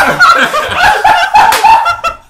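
A woman laughing hard in a quick run of short laughs.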